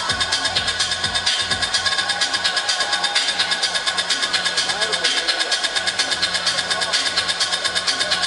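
Electronic dance music played loud over a large sound system, a steady kick drum pulsing about twice a second, with the chatter of a dancing crowd mixed in.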